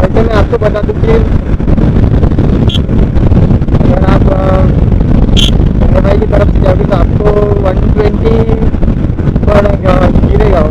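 Steady wind rush on the microphone over the running engine of a Yamaha R15 V3, a 155 cc single-cylinder sport bike, cruising at highway speed. A muffled, unintelligible voice comes through at times, and there are two brief high squeaks.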